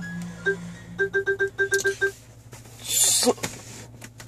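Soundtrack of a video playing through a Pioneer Z140 in-dash head unit and the car's speakers: an electronic beep, then a quick run of beeps in two pitches, like a ringtone, and a short whoosh about three seconds in.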